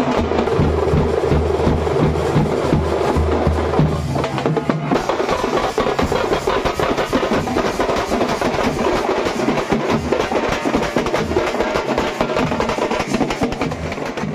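A street drum troupe playing fast, dense rhythms with sticks on shoulder-slung frame drums and barrel drums. A deep booming beat under the drumming drops away about four seconds in, leaving the quicker, sharper strokes.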